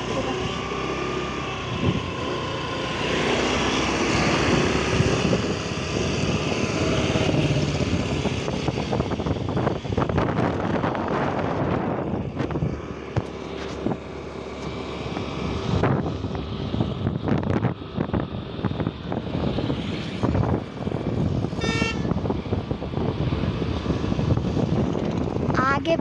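Steady engine and wind noise from a moving vehicle travelling along a road.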